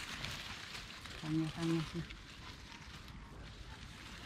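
Grass and leaves rustling and crackling softly as a man searches through the undergrowth by hand, with a brief two-syllable voiced murmur about a second in.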